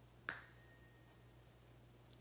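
A single sharp click about a quarter second in, with a faint high tone lingering for about a second after it; otherwise near silence with a low steady hum.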